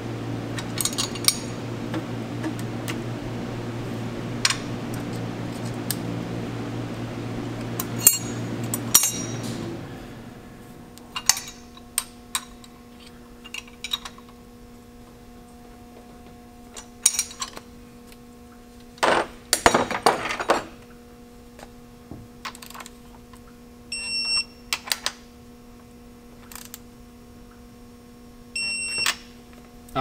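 Metal hand tools clicking and clinking on the valve train of a Paccar MX-13 diesel during a valve lash adjustment, with scattered sharp knocks and a quick run of clicks about two-thirds through. A steady hum underneath stops about ten seconds in, and two short high-pitched tones sound near the end.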